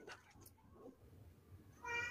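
A short, high-pitched meow starting near the end, after a stretch of quiet room tone.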